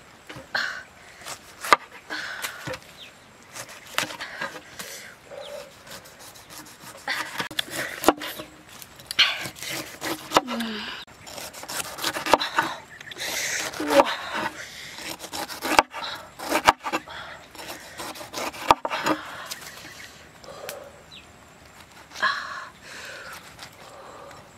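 Large knife shaving the rind off a pineapple: rasping strokes through the tough skin, with sharp knocks of the blade against a wooden board several times.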